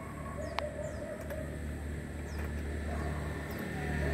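Birds calling: a few short, high, falling chirps and a brief low cooing, over a steady low hum.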